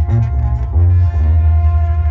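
Brass band music with a heavy low bass line and one long held horn note.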